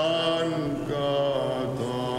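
Byzantine chant by male chanters: a slow melody sung on long held, ornamented notes over a steady low drone (the ison).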